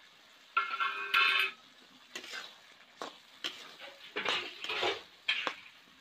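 Flat metal spatula stirring and scraping thick curry with tomato pieces around a metal kadai. A loud ringing scrape comes about half a second in, followed by several shorter scraping strokes, with a light sizzle from the pan.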